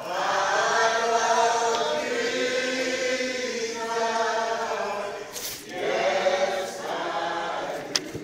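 A group of voices singing together in long, held notes, with two short breaks near the middle and end.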